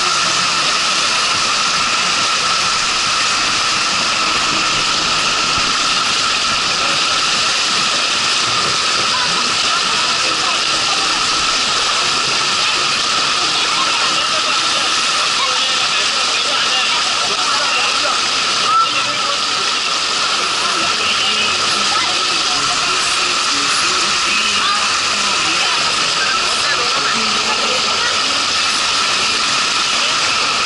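Water rushing steadily down a water slide's flume, a loud continuous hiss, with one brief click a little past the middle.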